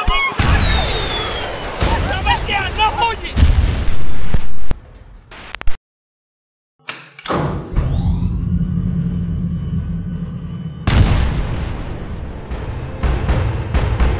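Film sound effects of a bombardment: a falling whistle and loud explosions with people shouting, the loudest blast about four seconds in. Then a second of silence, and title music begins with a swelling sustained tone over a deep rumble and a heavy hit about eleven seconds in.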